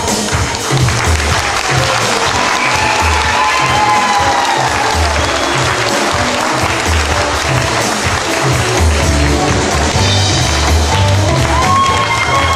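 Audience applauding over band music with a steady low beat.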